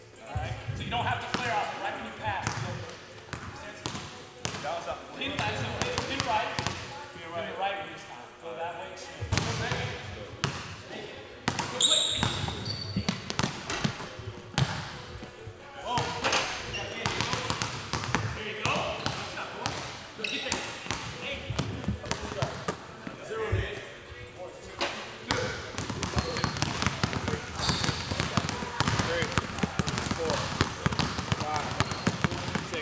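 Basketballs bouncing on a hardwood gym floor in repeated sharp thuds, with indistinct voices echoing in the gym.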